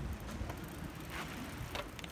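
Bicycles rolling off on a dirt trail: a low, steady rumble with a couple of faint ticks.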